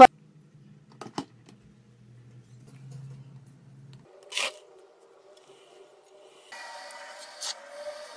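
Quiet handling of a nut-milk maker: a couple of faint clicks about a second in and a short scrape about four and a half seconds in as the jar is seated on its base and the control panel touched, then a faint steady hum over the last second and a half.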